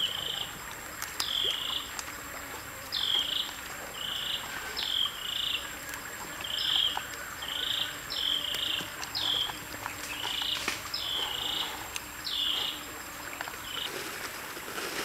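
An animal's repeated high call, about one a second: each a quick downward slur into a short buzzy note.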